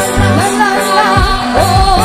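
Live pop band music played through a concert sound system: a singer's wavering melody over a steady drum beat and bass.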